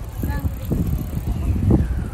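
Bicycle being ridden over a paved path, its rattle mixed with wind buffeting the phone microphone, with a voice faintly in the background.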